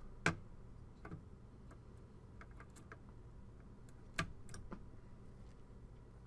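Faint small clicks and ticks as a desktop CPU is lowered and seated into an open LGA motherboard socket by hand. There is a click just after the start, another about a second in and a louder one around four seconds in, with a few fainter ticks between.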